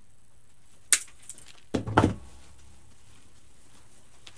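Wire cutters snipping through the stems of artificial pine picks: one sharp snap about a second in, then two more clicks with a dull knock around two seconds.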